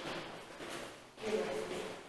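Indistinct speech: a short voice a little past halfway through, over low background room noise.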